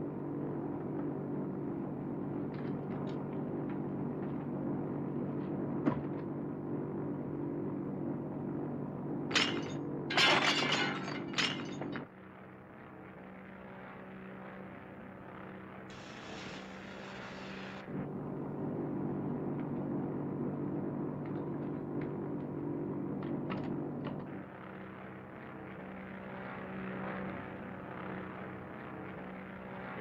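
Steady drone of a propeller airliner's engines, broken about ten seconds in by a short flurry of loud crashes and thuds. A flare hisses briefly near the middle.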